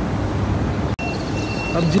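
Outdoor street ambience: a steady low rumble of road traffic. It breaks off abruptly about a second in at an edit cut, and then comes back with a thin, steady high-pitched whine added.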